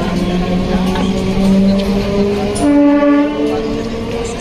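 Train horn sounding as a held tone, then a louder, higher-pitched blast about two and a half seconds in, over a crowd's chatter.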